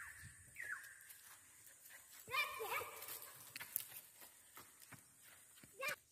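Faint animal calls: two short falling calls near the start, then a longer, wavering pitched call about two seconds in, and a brief call near the end.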